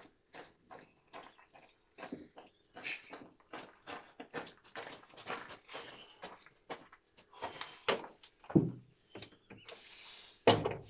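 Footsteps crunching on gravel under a heavy load, an irregular run of short crunches that grows louder as the walker comes nearer, with heavy breathing from the effort. A louder, deeper sound stands out about eight and a half seconds in.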